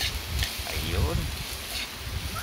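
Metal spoon stirring and scraping chopped vegetables in a metal pan over a low wood fire, with only a faint sizzle because the fire is still weak. Wind rumbles on the microphone, and a short voice is heard about a second in.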